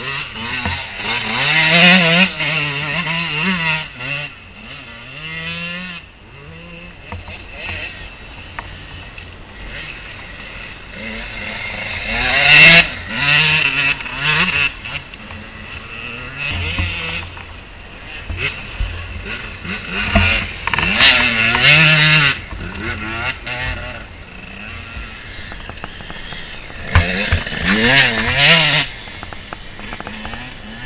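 Enduro dirt bikes passing one after another, their engines revving up and down as they ride through. There are loud passes a couple of seconds in, around the middle, about two-thirds through, and near the end, with quieter stretches between.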